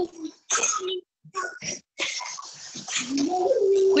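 Indistinct voices, with short breathy bursts early on, then a drawn-out voice rising in pitch and held near the end.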